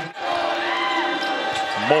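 Basketball game ambience on a hardwood court: crowd noise in the arena with a ball being dribbled. It follows a brief dropout at an edit just after the start.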